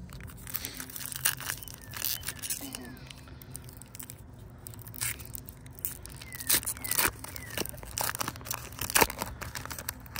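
A foil baseball card pack wrapper being torn open and crinkled by hand, with the cards inside shuffled: an irregular run of sharp crackles and rustles, a few louder ones in the second half.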